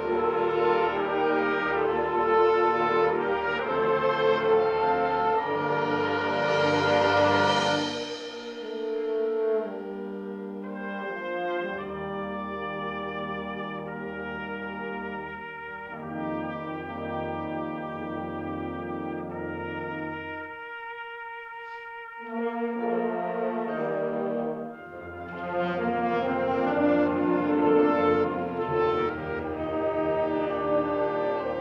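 Wind symphony band playing, with brass carrying sustained chords. The full band builds to a loud peak about seven seconds in, drops to a softer held passage through the middle, then comes back in loudly near the end.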